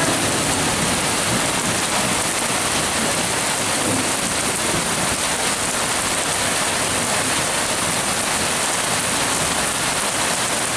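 Heavy rain pouring down steadily onto a waterlogged paved yard, a dense, even hiss with no break or change.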